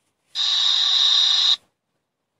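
A burst of static-like hiss, a little over a second long, that cuts in and out abruptly.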